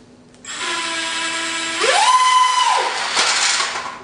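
Twin 30 mm electric ducted fans on a foam RC A-10, driven by small Turnigy inrunner motors, spooling up to a steady whine about half a second in. They are throttled up to a much higher whine around two seconds, then throttled back down. The thrust is enough to make the model scoot across the floor, and there is a single brief knock shortly after the throttle comes back.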